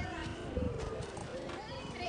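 Indistinct chatter of a crowd of people talking at once, no single voice clear.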